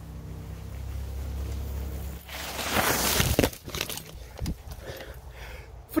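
Mountain bike riding up and past on a dirt trail covered in dry fallen leaves: the tyres roll and crunch through the leaves, growing louder and peaking in a loud rush for about a second as the bike goes by, then a few lighter rustles.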